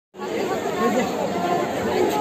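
Several people talking at once, overlapping voices of a small crowd.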